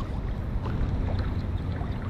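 Steady low rumble of wind buffeting the microphone, over river water moving around a wading angler's legs, with a few faint splashes.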